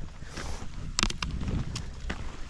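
Rollerski wheels rolling on asphalt with a steady low rumble and wind on the microphone, broken by a few sharp clicks of the ski pole tips striking the pavement about a second in.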